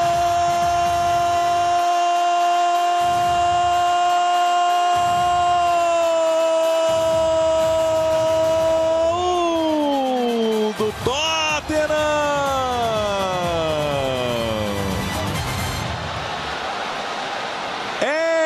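A Brazilian TV football commentator's long drawn-out goal cry, "Goooool", sung out on one steady high note for about nine seconds, then sliding down in pitch in a couple of falling sweeps, with a brief catch of breath in the middle.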